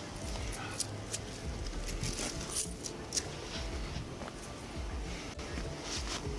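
Quilted jacket fabric rustling and rubbing against a body-worn camera during a pat-down search, with a few short sharp clicks and scrapes.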